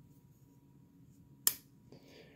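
A blade of a Buck slipjoint pocketknife snapping into place against its backspring: one sharp click about one and a half seconds in, then a fainter click just before the end, amid quiet handling of the knife.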